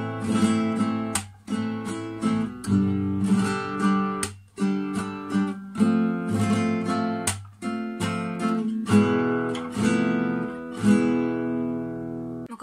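Nylon-string classical guitar playing the Spanish 'Corrida' rasgueado (fan) strum slowly through the first-position chords Am, G, F and E, each chord a flurry of quick finger strokes that rings out before the next.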